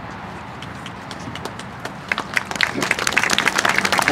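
Audience applauding outdoors. Scattered claps begin about halfway through and build into steady clapping by the end.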